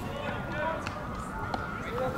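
Faint, distant voices of players and spectators around an open ball field, with a single short knock about one and a half seconds in.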